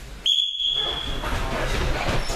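A single steady, high-pitched signal tone starts about a quarter of a second in and holds for about a second. Afterwards comes the noise of people moving about on the mats.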